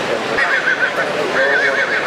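An Irish Draught horse whinnying twice, a high, wavering call, over a background of crowd chatter.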